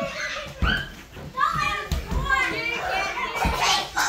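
A group of children shouting and calling out over one another while they play, with a few dull thumps among the voices.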